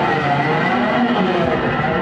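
Noise music played live on electronic gear: a loud, dense wash of distorted noise with wavering, bending tones running through it.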